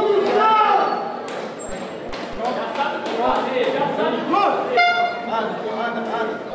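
Untranscribed voices talking and calling out in a large hall, with a few sharp thuds. A short buzzing horn sounds about five seconds in, the signal starting the second round of an MMA bout.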